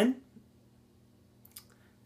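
The end of a man's spoken question, then a pause of near quiet room tone broken by a few faint, short clicks, one just after the speech stops and a small cluster about one and a half seconds in.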